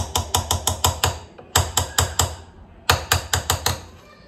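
Metal fork tapped quickly against the rim of a stone-coated saucepan in three short runs of sharp clicks, shaking excess honey off a dipped cookie.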